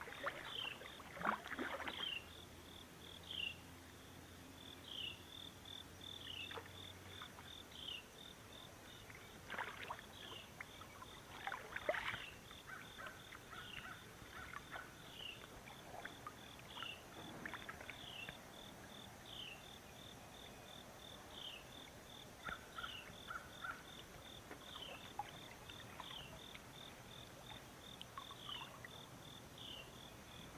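A steady high insect trill, with a short falling chirp about every second and a half. A few sudden splashes from a hooked fish thrashing at the surface beside the kayak are the loudest sounds, about a second in and again around twelve seconds.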